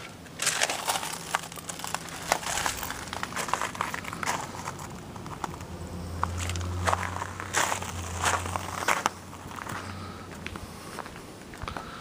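Footsteps crunching on gravel, in short irregular crackles, over a low steady hum that swells for a few seconds past the middle.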